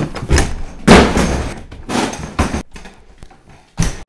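A loose wooden door banging and thudding as it is wrestled about in a doorway: several heavy knocks, the loudest about a second in, and a last short thud near the end.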